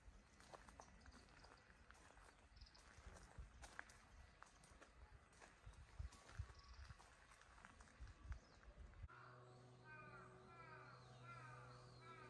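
Faint footsteps crunching on a gravel path, irregular soft steps. About nine seconds in, these cut off suddenly, replaced by a steady low hum with short falling chirps repeating in pairs.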